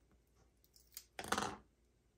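Backing liner being peeled off a short strip of double-sided Tear & Tape adhesive on cardstock: a soft tick about a second in, then a brief scratchy peel lasting under half a second.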